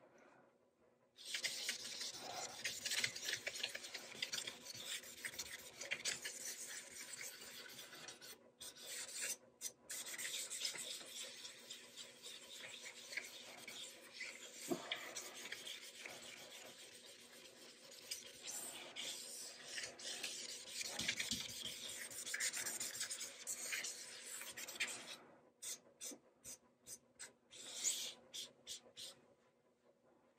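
A dye-wet shop towel rubbed over the quilted maple top of a guitar body while wiping on a coat of yellow dye: a steady scratchy rubbing that starts about a second in and turns into a quick run of short separate wipes near the end.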